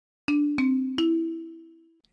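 Short three-note chime jingle: three bell-like notes struck about a third of a second apart, the second lower and the third higher, the last ringing out and fading.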